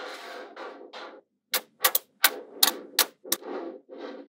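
Small magnetic balls rattling and clicking against one another as a ring of them is squeezed and rolled flat into a slab. Stretches of dense rattling alternate with several sharp snaps as balls jump into place.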